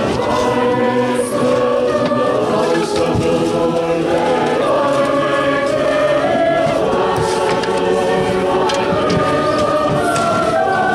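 Mourners singing a slow hymn together, unaccompanied, in long held notes, with a few faint shovel scrapes in the dirt.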